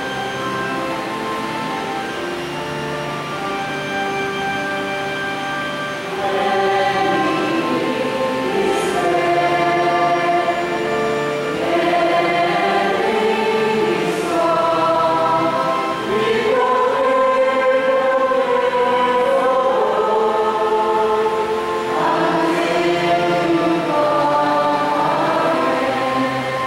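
A choir singing a slow liturgical chant, with long held notes changing pitch every second or two, growing louder about six seconds in.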